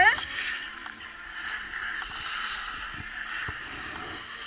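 Skis sliding and scraping over packed snow, a steady hiss with small scattered knocks. A brief rising squeal at the very start is the loudest moment.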